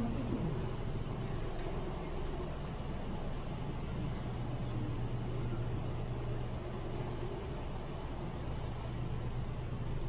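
Steady low hum with a soft even hiss: the room tone of a prayer hall with its fans and ventilation running. The tail of a man's chanted "Allahu akbar" dies away right at the start.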